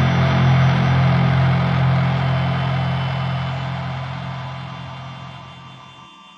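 Doom-style electric guitar drone: a low, heavily distorted chord held and slowly fading out over several seconds, with the low notes stopping at the very end.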